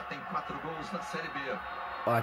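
Only speech: a man's voice talking quietly in Portuguese, the football commentary from the television.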